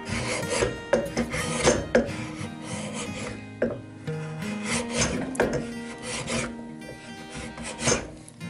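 Small hand plane shaving a spalted maple block held in a vise: a run of short scraping strokes, unevenly spaced about half a second to a second apart.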